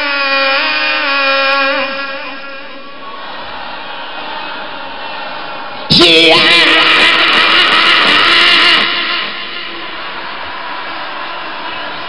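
Live rock concert between songs: a long held sung note fades into crowd noise, then about six seconds in a sudden loud burst of amplified voice and crowd yelling lasts about three seconds before the crowd noise carries on.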